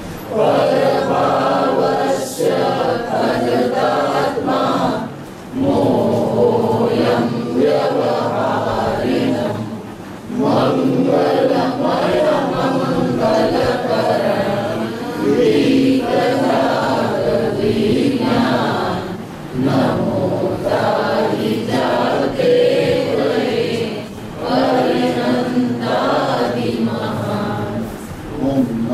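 Several voices chanting a devotional hymn together, in sung phrases of about five seconds with short breaks between them.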